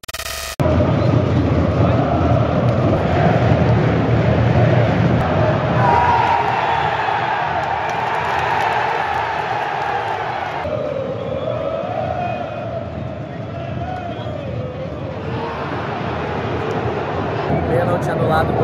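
A large football stadium crowd chanting and singing in unison, with the tune of the song wavering up and down in the second half. A short digital glitch transition effect opens it.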